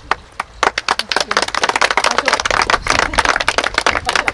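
A small group applauding: scattered hand claps that thicken into steady clapping about half a second in.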